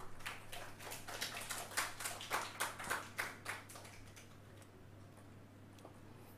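Light applause from a small audience of clapping hands, thinning out and fading by about four seconds in, the usual applause at the end of a talk.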